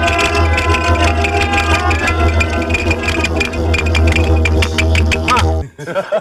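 Live electronic music from a eurorack modular synthesizer: a steady deep bass under sustained synth tones, with a fast run of clicking percussion. Near the end it cuts out abruptly into a brief gap.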